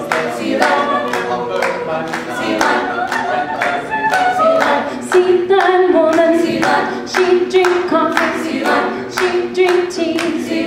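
Mixed-voice a cappella group singing a rhythmic backing, with hand claps keeping a steady beat. A woman's solo voice carries the melody over it.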